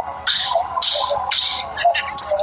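A person's voice making three short, breathy, hissing bursts about half a second apart, with a faint wavering voice underneath.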